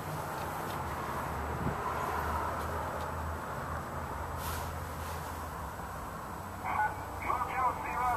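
Steady low hum and hiss in an SUV's cabin. Near the end a voice starts talking.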